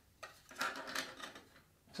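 A 2.5-inch SSD being fitted onto the steel back panel of a PC case: a sharp click, then about a second of light scraping and knocking as its grommeted mounting screws slide into place.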